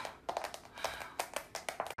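Long acrylic fingernails tapping on a smartphone touchscreen, a quick irregular run of sharp clicks as a passcode is punched in again and again.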